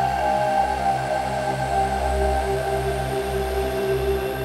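Background score music: sustained held tones over a steady low drone, with no speech.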